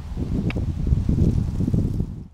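Wind buffeting the microphone: a gusty low rumble, with a single sharp click about half a second in.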